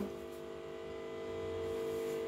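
A steady electrical hum with several pitched tones, growing slightly louder toward the end.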